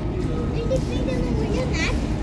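City street background: a steady low rumble of traffic and wind on the microphone, with faint voices briefly near the end.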